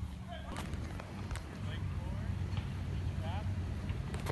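Open-air background: a low steady rumble, with faint distant voices now and then and a few light clicks.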